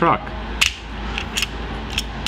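Small plastic transforming robot toy clicking a few times as its jointed parts are handled and folded.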